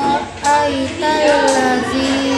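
A young boy's voice reciting the Quran in a melodic chant (tilawah), with long held notes that bend and turn in pitch. It breaks briefly for breath about a third of a second in, then carries on with a long steady note.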